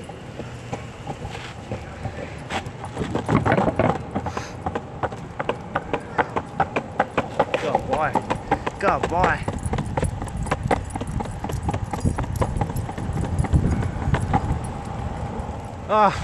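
Longboard wheels rolling on pavement, clacking in a fast, even series over sidewalk joints for most of the ride, over a steady rolling rumble.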